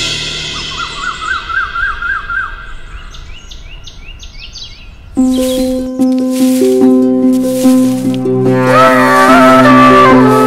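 Film soundtrack: a sad string passage fades out and birds chirp and twitter for a few seconds. About five seconds in, background music starts loudly, with held drone tones, a steady percussion beat and a melody entering near the end.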